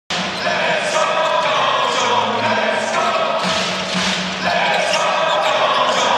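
Basketball dribbled on a hardwood court, under a continuous din of arena crowd voices.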